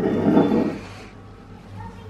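A domestic cat making one short, rough call about a second long.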